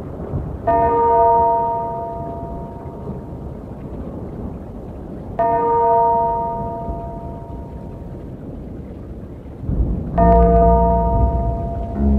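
A tolling bell, struck three times about five seconds apart, each stroke ringing out and fading slowly over a steady low rushing noise. A deep sustained bass note comes in with the third stroke, as the song's introduction builds.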